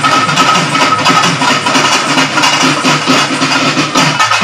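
A live folk percussion ensemble playing loudly: a barrel drum and round hand-held drums beaten together in a fast, dense rhythm, with a steady high note held over the drumming.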